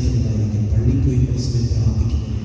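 A man's low voice heard together with music, the voice held on long notes like a devotional chant.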